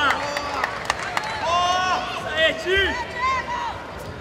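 Several people shouting over one another in loud, high-pitched calls, with a few sharp clicks or slaps in the first second or so.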